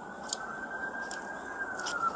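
A police siren's slow wail, its pitch rising a little and then falling, over steady background noise, with one short click about a third of a second in.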